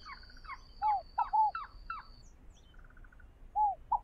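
Forest birds calling: a quick run of short notes, each sliding downward, in the first half, then two more near the end, with a brief rapid trill in between. A thin, high, steady tone runs behind the first half.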